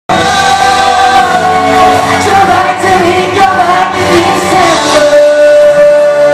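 Male pop vocal group singing live into handheld microphones over music, loud in a hall; a long note is held from about five seconds in.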